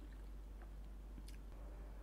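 Faint clicks and soft squishing of chopsticks picking through saucy tteokbokki and fish cake in a pan, with one sharper click a little past halfway, over a low steady hum.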